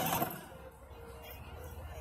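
Battery-powered ride-on toy car's small electric drive motor running with a faint steady whine, over a low rumble of its plastic wheels on asphalt. A brief voice sounds at the very start.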